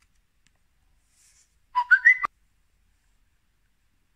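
About two seconds in, a Samsung Galaxy phone plays a short electronic chime of three rising notes over a few small clicks as the USB charging cable is plugged in. This is the phone's charger-connected sound. The chime cuts off abruptly after about half a second.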